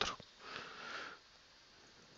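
A person's breath drawn in through the nose, a short hiss lasting under a second just after speaking, followed by near silence.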